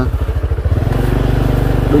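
Small motorcycle engine running at low speed while being ridden along a dirt track. Its beat is uneven and pulsing for about the first second, then settles to a steady hum.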